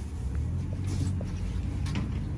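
Steady low rumble of outdoor background noise at a busy outdoor market, with a few faint light clicks.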